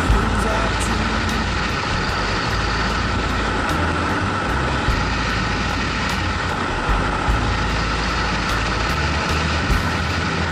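Motorcycle travelling at motorway speed, heard from an onboard camera: steady wind rush over the microphone with engine and road noise beneath, and a few brief knocks.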